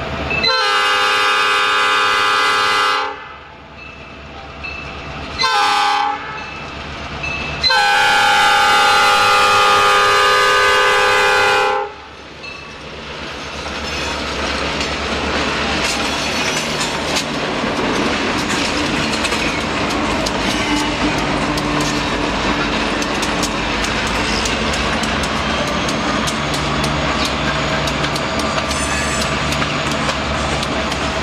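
A diesel freight locomotive's air horn sounds several notes together at a grade crossing, blowing long, short, long. Then two EMD diesel locomotives and loaded pulpwood cars roll past close by, a steady rumble of engines and wheels with rapid clicking over the rail joints.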